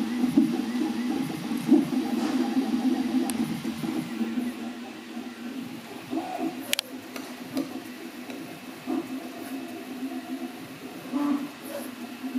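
Original Prusa i3 MK2 3D printer running a print, its stepper motors whining in shifting tones as the print head moves. About halfway through it gives way to the Original Prusa MK3 printing, noticeably quieter, which goes with its newer electronics and Trinamic motor drivers.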